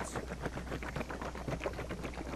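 Liquid sloshing and jostling inside a one-gallon plastic jug as it is shaken hard, blending tint pigment into the polyol B-side of a polyurea repair product.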